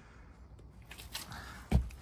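Rustling and shuffling of someone climbing into an old car's driver's seat, with one dull thump near the end as they settle onto the seat.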